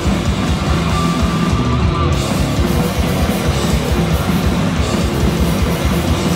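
Live crust punk band playing loud and fast: distorted electric guitars and bass over rapid, driving drums, heard from within the crowd in a club.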